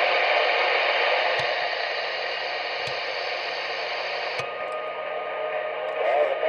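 Static hiss from a Realistic TRC-433 CB base station's speaker as it is stepped through the channels, with no station coming through. A short click comes with each channel step, three times about a second and a half apart, and the hiss changes after the last one.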